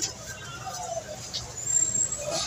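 Market background: faint voices and chatter at a vegetable stall, with a few small handling clicks and a brief high-pitched tone near the end.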